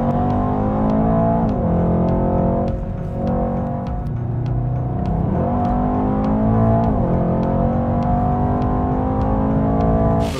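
Mercedes-AMG E63 S 4Matic+'s twin-turbo V8 heard from inside the cabin, accelerating through the gears: its pitch climbs and drops back at each upshift, three times. A music track with a steady beat plays along.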